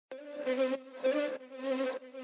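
Intro of a Caribbean gospel riddim track: a buzzy synth note held at one pitch, swelling and fading in short phrases, with no drums yet.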